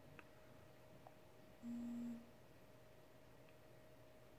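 A short, steady low buzz lasting about half a second, about halfway through: the Moto G6's vibration motor giving its brief shutdown vibration as the phone powers off.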